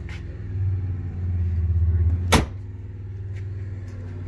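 The door of a Yamaha Wolverine RMAX4 side-by-side is shut once, about two and a half seconds in, with a single sharp clunk as it latches. A low, steady engine idle runs underneath.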